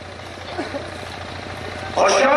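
A pause in a man's amplified speech: steady low hum and hiss from the sound system and surroundings, with a faint snatch of voice about half a second in.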